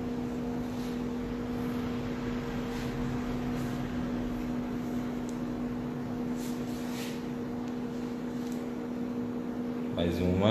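Steady low mechanical hum with a fainter, higher tone above it, like room machinery running, with a few faint ticks here and there.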